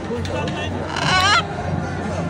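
Blue-and-gold macaw giving one short, loud squawk about a second in, wavering and rising in pitch, over crowd chatter.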